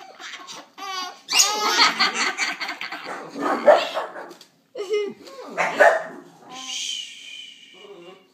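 A baby laughing hysterically in repeated bursts of belly laughter, with an adult laughing along. The laughter dies away about six seconds in and gives way to a steady hiss near the end.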